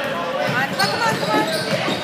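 Basketball being dribbled on a hardwood gym floor, short knocks as players run the ball up the court, with spectators' voices calling out over it in the echoing gym.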